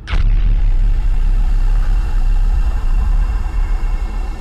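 Opening sound effect for a news programme: a sudden hit with a quick falling whoosh, then a loud, steady low rumble with sustained high tones over it.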